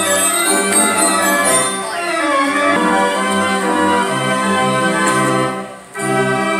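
Carousel band organ music playing a tune, with a brief drop in level near the end. The music is off tune and weird.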